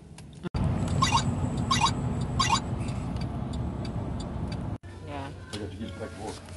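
Car driving, its engine and road noise heard from inside the cabin as a steady rumble, with three short high-pitched chirps about 0.7 s apart. The sound cuts off abruptly near the end.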